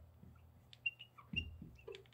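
Faint, short squeaks of a marker tip writing on a glass lightboard, a few brief chirps with small clicks in between.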